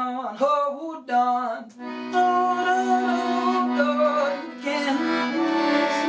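Folk trio of piano accordion, acoustic guitar and cello playing, with the accordion to the fore. The first two seconds are broken by short pauses, then the trio settles into held chords.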